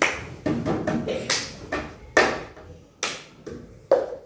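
Cup-rhythm pattern played with hand claps, palm taps on a wooden desk and a cup, a string of sharp strikes with stronger beats roughly every second and lighter taps between.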